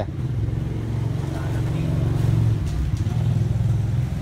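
A motor vehicle's engine running, a low rumble that grows louder over the first couple of seconds and then holds steady.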